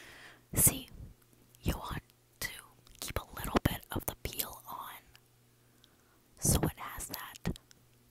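Close whispering into an earphone's inline microphone, in short breathy bursts with pauses.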